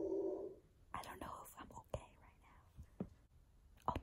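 A young woman speaking quietly, close to the microphone, half-whispering a few words.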